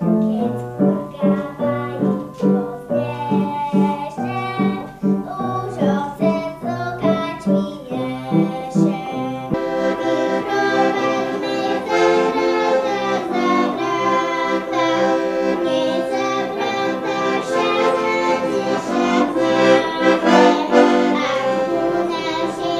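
A little girl singing a Zemplín folk song with instrumental accompaniment; the accompaniment becomes fuller and more sustained about nine seconds in.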